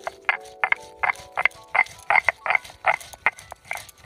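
Chopped onion being ground to paste on a stone sil-nora, the stone roller rasping over the flat grinding slab in quick back-and-forth strokes, about three a second.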